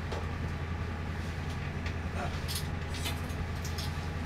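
Steady low hum of the ambulance's running equipment, with a few faint knocks and rustles as a fire extinguisher is picked up and handled.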